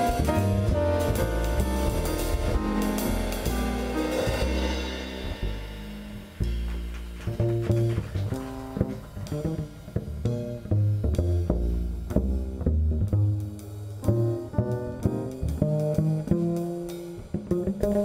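Live jazz piano trio playing: grand piano over plucked upright bass, with drums. The cymbal shimmer thins out about five seconds in, leaving mostly piano and bass.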